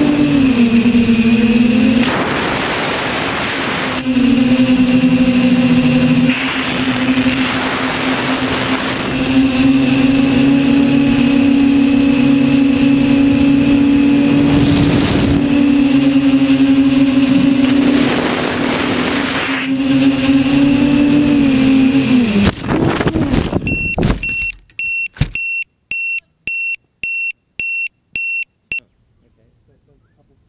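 Quadcopter motors and propellers humming steadily, the pitch dipping and rising with throttle, with noisy swells of wind on the onboard microphone. Near the end the motor sound cuts out and about eight short high electronic beeps follow, about two a second.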